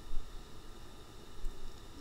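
Faint steady hiss of a home voice recording in a pause between lines, with a brief low thump just after the start and a softer one about one and a half seconds in.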